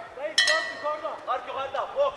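Metal ring bell struck about half a second in and ringing on, signalling the start of the second round, with voices shouting over it.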